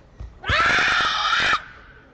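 A female karateka's kiai during a kata: one loud, high shout lasting about a second, starting about half a second in. A soft thud on the mat comes just as it begins.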